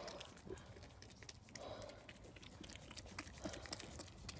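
Ewe licking and nuzzling her newborn lamb in bedding shavings: faint, with many small clicks and rustles.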